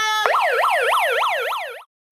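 Handheld megaphone's built-in siren. A steady tone switches to a fast yelp that rises and falls about four times a second, then cuts off suddenly near the end.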